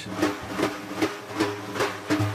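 Kurdish ensemble music beginning: percussion strokes at a steady beat of about two and a half a second over held low instrumental notes.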